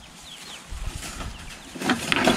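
Young chickens giving a few faint, short, falling peeps, over a low rumble of handling noise about a second in.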